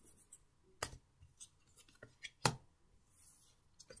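Tarot cards being handled on a table: a few sharp taps and snaps of the deck and cards, the loudest about two and a half seconds in, and a short soft swish near the end as a card is laid out.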